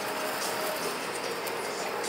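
Food sizzling on a flat-top griddle: a steady hiss with a faint steady mechanical hum underneath and a few faint clicks.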